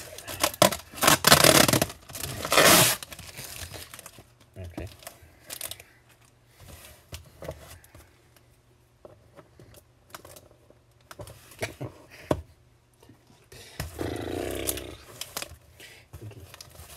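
Packing tape and cardboard on a shipping box being ripped and pulled, in several loud tearing bursts over the first three seconds, followed by scattered crinkles and small clicks of handling.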